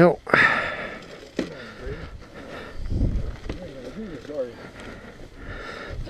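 Faint, indistinct talk from a person nearby, with a short breathy noise just under a second in and a low bump about three seconds in; no engine is running.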